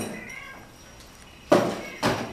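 A cat meowing faintly, then a sudden loud knock about a second and a half in.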